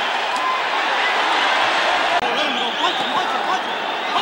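Boxing arena crowd: a steady din of many voices and shouts, with a couple of sharp knocks.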